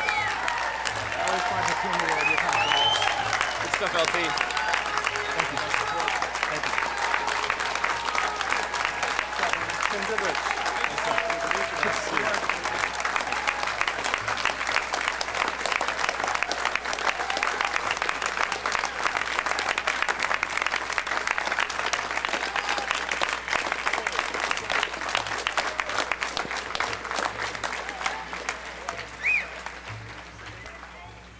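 A large audience applauding at length, with voices calling out and whooping in the first several seconds; the clapping dies down near the end.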